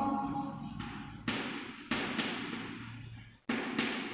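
Chalk writing on a blackboard: three sudden scratches and taps, about a second, two seconds and three and a half seconds in, each fading away.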